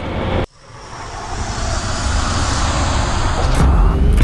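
A rising whoosh sound effect: a noise swell that builds steadily in loudness for about three seconds after a sudden cut, with deep bass coming in just before the end as the intro music starts.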